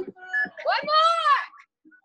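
A woman's voice: a brief spoken phrase, then a drawn-out, high-pitched vocal exclamation about a second long whose pitch rises and then falls.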